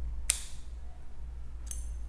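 Scissors snipping yarn ends off a crocheted waistband: two snips about a second and a half apart, the second with a brief metallic ring of the blades.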